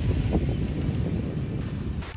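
Wind blowing across the microphone, over the wash of small waves on a sandy beach.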